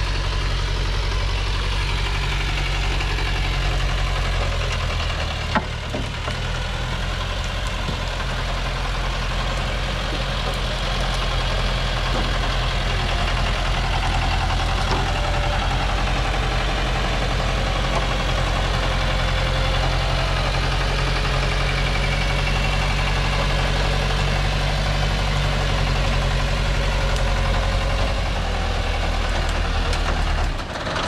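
Diesel engine of a Thaco truck overloaded with acacia logs, running steadily at low revs as the truck crawls over a rough dirt track.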